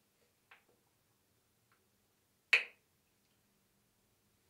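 A single sharp plastic click about two and a half seconds in, after a fainter click near the start: the flip-top cap of a plastic tube snapping open.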